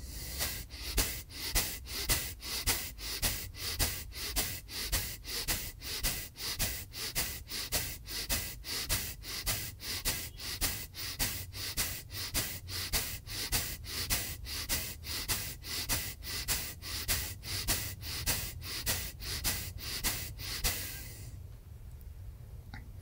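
Kapalbhati (breath of fire) breathing: quick, forceful exhalations pushed out through the nose with the mouth closed, each followed by a passive inhale, in a steady train of about two sharp puffs a second. The round stops about a second before the end.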